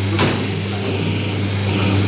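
Steady low hum of a running paper plate making machine, with one sharp knock shortly after the start as a hand works at the die.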